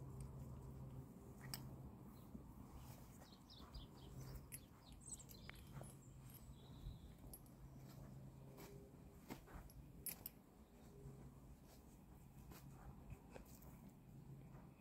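Near silence: faint room tone with a low hum that comes and goes and a few scattered faint clicks.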